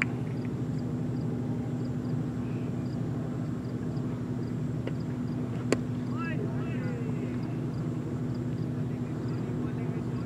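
A cricket bat strikes the ball once with a sharp crack about six seconds in, and short shouted calls follow. A steady low hum runs underneath.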